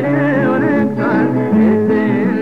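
Ethiopian gospel song (mezmur): a voice singing a wavering, ornamented melody over sustained instrumental backing.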